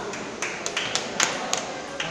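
Table tennis ball clicking off paddles and the table in a quick exchange: about six sharp taps in a little over a second, the loudest about a second in.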